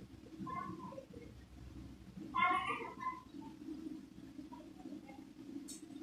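A cat meowing twice, a short call about half a second in and a louder one about two and a half seconds in, over a low steady rumble from the electric kettle heating its water.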